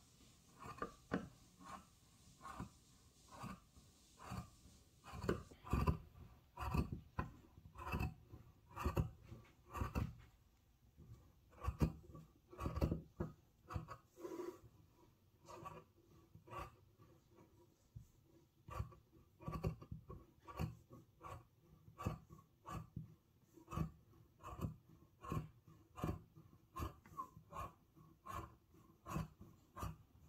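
Fabric scissors cutting through cloth in a steady run of snips, about two a second, as the cloth is cut lengthwise into long strips.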